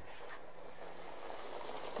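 Faint, steady background noise with no distinct events: open-air ambience at the track.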